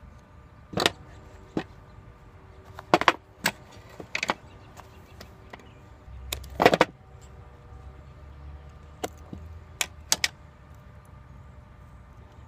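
Handling noise of shoes and small metal trinkets: a dozen or so sharp clicks, clinks and knocks at uneven intervals as a metal chain ornament and shoes are picked up, turned over and set down on a tabletop.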